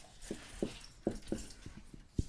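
Dry-erase marker squeaking and scratching across a whiteboard as letters are written, a quick run of short squeaks, one every few tenths of a second.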